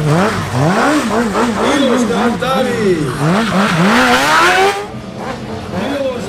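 Sport motorcycle engine revved hard up and down in quick throttle blips, about two or three a second, as the stunt bike is slid and leaned low; a burst of tyre hiss joins it about four seconds in before the revving drops away near the end.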